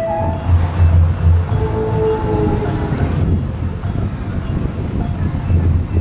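Wind buffeting the microphone in gusts, a heavy uneven rumble, with music playing underneath.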